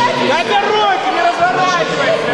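People's voices calling out and talking, several overlapping at once.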